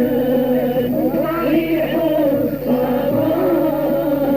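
Old recording of Algerian Arabic vocal music: men singing a melismatic chant-like melody together over steady sustained low tones.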